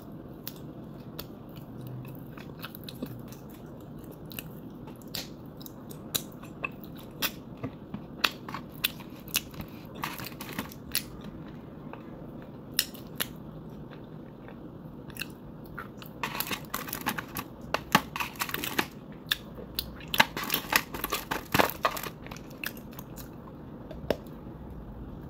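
Close-miked chewing and crunching of chalky edible clay, scattered sharp crunches at first, then two dense runs of crunching in the second half.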